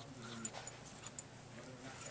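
A white French bulldog puppy making a short, low vocal sound close to the microphone near the start, followed by a couple of faint clicks.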